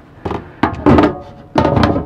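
Covers being lifted and set down over a double stainless steel sink: a handful of knocks and thunks, some leaving a short ring from the metal sink.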